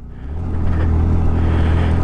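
Motorcycle engine pulling steadily up a gravel climb, swelling in loudness in the first half second and then holding a steady low note. The bike is labouring under load in thin high-altitude air, which the rider says has cost it much of its power.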